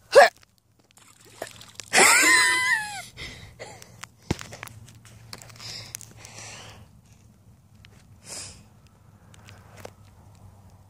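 A person's brief vocal sound, a falling exclamation about two seconds in, then faint footsteps on dry, pebbly mud.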